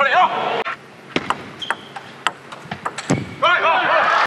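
A table tennis rally: the sharp clicks of a celluloid-type ball struck by bats and bouncing on the table, a few tenths of a second to half a second apart. Voices react briefly at the start and again near the end as the point is won.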